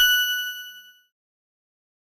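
A single bright metallic ding: a bell-like chime sound effect struck once, its high ringing tones dying away within about a second.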